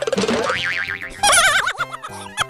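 Cartoon 'boing' sound effect: a quick rattling lead-in, then a wobbling, warbling pitch, repeated louder about a second in, over comedy background music.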